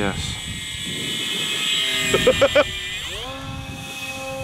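Electric motor and propeller of a Durafly Goblin Racer RC plane whining in fast flight: a steady high-pitched whine that drops sharply in pitch about three seconds in and carries on at a lower pitch.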